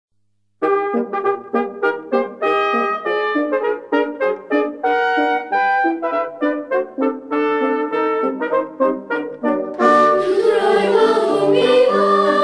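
Instrumental introduction of short, separate pitched notes, a few to the second, then a children's choir comes in singing about ten seconds in.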